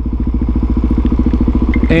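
Suzuki DRZ400SM's single-cylinder four-stroke engine idling steadily, a rapid even pulse of exhaust beats.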